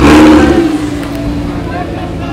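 Lamborghini Huracán Spyder's V10 engine revving hard as the car pulls away: a loud burst at the start that fades over about a second.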